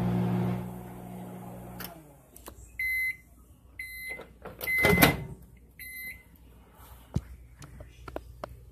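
Hamilton Beach microwave oven running with a steady hum that stops about two seconds in as its timer runs out, then four short high beeps about a second apart to signal the end of the cycle. A loud clatter comes about five seconds in as the door is opened.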